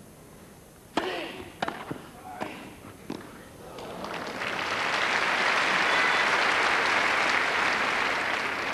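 A quick tennis rally of about four racket strikes on the ball: serve, return and volleys, the serve the loudest. The point ends with a winning touch volley, and the crowd's applause swells and holds loud.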